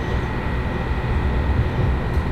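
Cabin noise inside a moving passenger train: a steady low rumble from the wheels and running gear, with a faint steady high tone above it.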